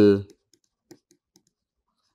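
Faint, scattered light clicks and taps of a stylus writing on a tablet or pen-display surface.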